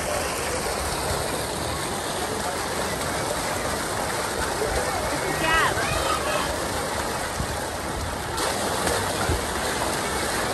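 Steady rushing of water running down a pool water slide's chute, with the murmur of people's voices around the pool. A brief high call rises and falls over it about five and a half seconds in.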